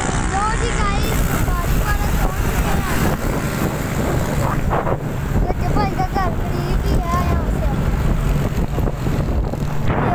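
Wind buffeting the phone's microphone during a motorcycle ride, a loud steady rumble, with bits of a boy's voice breaking through it.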